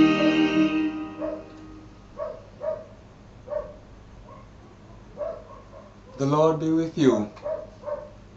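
The last sung chord of a hymn fades out over the first second. Then a dog gives short yips and whimpers every half second or so, with one louder, longer cry about six seconds in.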